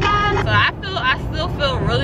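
A woman's voice with a wavering, drawn-out pitch, without clear words, inside a moving car's cabin, over the car's steady low road drone.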